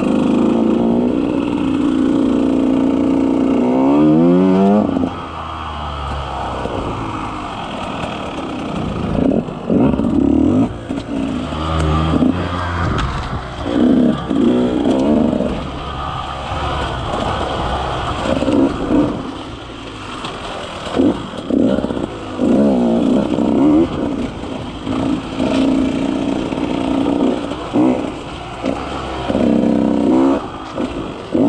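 KTM 150 XC-W's single-cylinder two-stroke engine revving in short bursts as the throttle is opened and shut over and over, with one long rising rev about four seconds in.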